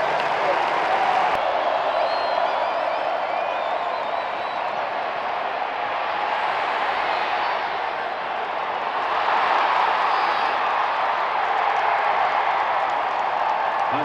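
Football stadium crowd noise, a steady roar of many voices, growing a little louder about nine seconds in as a long pass is thrown and caught.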